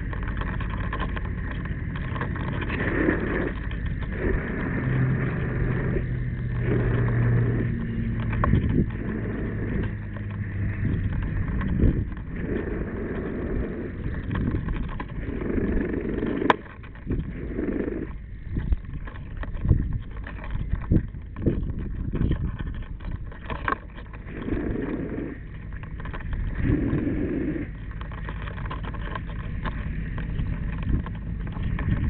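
Extinguishing agent sprayed onto a burning car: an uneven rushing hiss over a low rumble, with a few sharp knocks in the second half.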